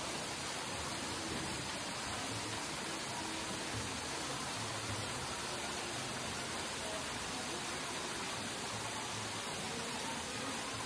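Steady, even rush of an artificial indoor waterfall splashing into a rock pool.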